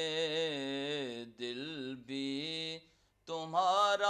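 A man's solo voice singing a devotional recitation unaccompanied, in long held, wavering notes. It comes in three phrases with short breaks, goes quiet for a moment about three seconds in, then resumes.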